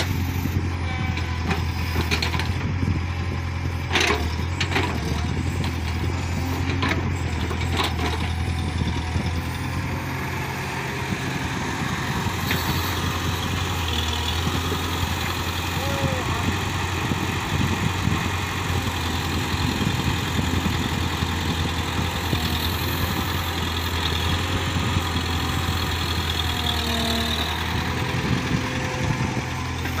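Tracked hydraulic excavator's diesel engine running steadily while the machine digs wet clay, with several sharp knocks in the first eight seconds or so.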